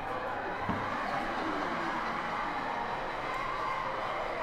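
Soundtrack of a short film playing over a lecture hall's loudspeakers: a steady, indistinct mix of voices and noise. A short low bump comes a little under a second in.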